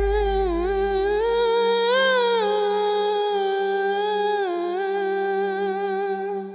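A woman's voice holding a long wordless sung note with small ornamental bends, rising briefly about two seconds in, over a steady low backing drone.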